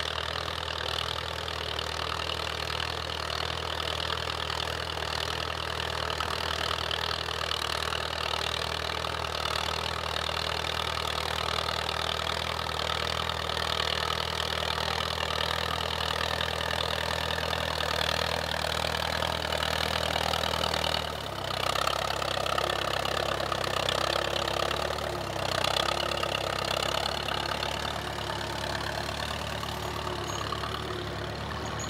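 Vintage Allis-Chalmers tractor engine running steadily at low speed while pulling a trailed plough. About two-thirds of the way through, its note changes as the tractor is heard from behind.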